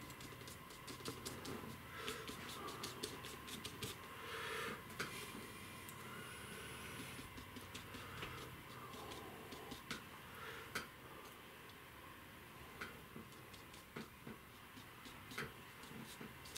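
Flat paintbrush dabbing and scrubbing oil paint on a taped-down painting surface: quiet, irregular light taps with a few short scratchy brush strokes.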